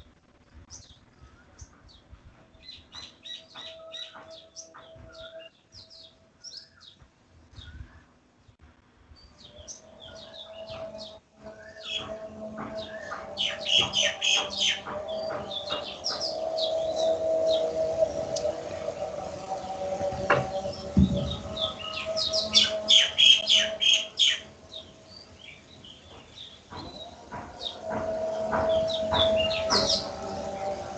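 Many small birds chirping in quick overlapping calls. They are sparse at first, build up and are loudest in the middle stretch, then pick up again near the end. A steady low tone sits underneath.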